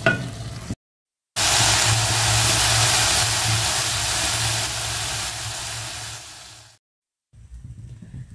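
Chopped sukuma wiki (collard greens) sizzling in hot oil in an aluminium pot: a steady hiss that starts abruptly about a second in and slowly fades, stopping shortly before the end.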